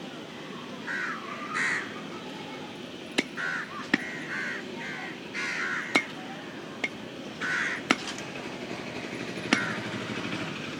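A knife chopping raw chicken on a wooden log chopping block: about six sharp, separate strikes at an uneven pace. Crows caw repeatedly in between.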